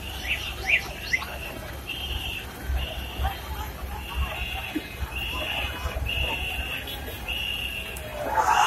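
High-pitched chirping: a few quick rising-and-falling chirps in the first second, then a run of short, even high notes about once a second, over a low street rumble.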